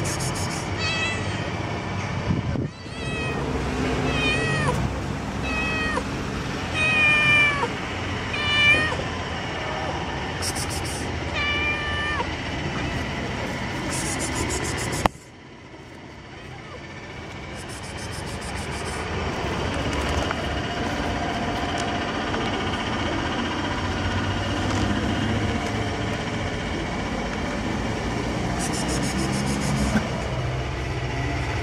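A cat meowing again and again, short falling calls about one a second, during the first twelve seconds. After an abrupt cut about halfway through, only steady background noise with a few brief rustles.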